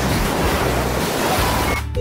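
A cartoon scene-transition sound effect: a steady rushing noise like surf, nearly two seconds long, that cuts off near the end, over background music.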